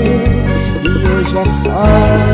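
Arrocha band music with a steady dance beat, bass and a melody line. A hissing crash near the end leads into a slightly louder phrase.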